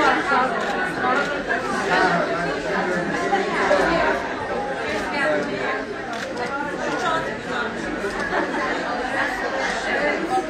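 Crowd chatter: many people talking at once, their voices overlapping into a steady murmur with no single speaker standing out, in a large hall.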